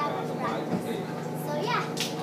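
Children's voices, a child speaking and chattering, with no clear words.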